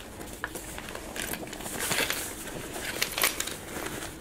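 Fabric of an Ape Case ACPRO1700 sling camera backpack rustling and scraping as it is handled, with the rasp of a zipper as a pocket is opened and a hand reaches inside.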